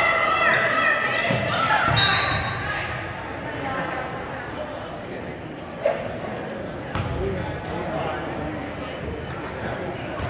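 Gymnasium sound during a basketball game: spectators shouting and talking, and a basketball bouncing on the hardwood court, all echoing in the large hall. A short high whistle sounds about two seconds in as play stops for a foul, then the hall settles to a quieter murmur with a couple of sharp knocks.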